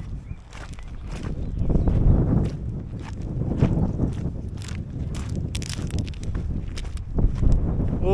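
Footsteps crunching on loose river shingle, about two steps a second, with wind rumbling on the microphone underneath.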